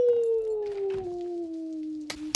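A man's long wordless 'ooooh' of excitement, one held note that slides slowly down in pitch.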